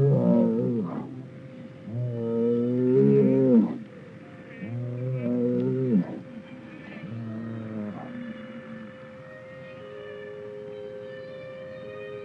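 Eerie experimental-film soundtrack: four long moaning tones, each bending in pitch as it ends, then about nine seconds in a steady high held tone over a lower one.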